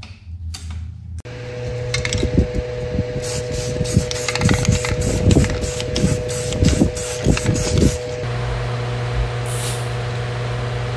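Aerosol spray paint can spraying in a series of short bursts, about two a second, over a steady hum. The bursts stop a couple of seconds before the end.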